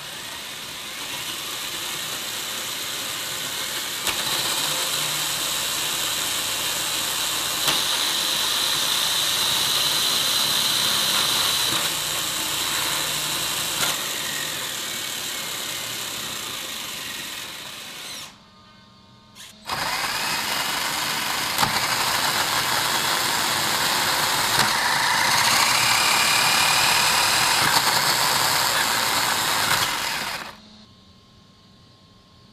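Brushless electric motor spinning a three-speed model-car gearbox and the raised wheels in first gear, a steady electric whir. It cuts out for a moment about 18 seconds in, then runs again, with a whine rising in pitch late on.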